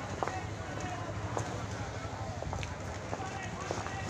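Outdoor ambience: a steady low hum under indistinct background voices, with scattered short clicks.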